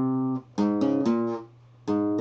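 Flamenco guitar played slowly with the thumb, a short bulería phrase of single notes. One note rings and stops, then four quick notes follow, then a short pause, then a new note sounds near the end.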